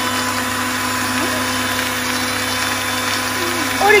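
Electric countertop blender running at a steady hum, blending a liquid milkshake of milk, orange pulp and peel, sugar and ice.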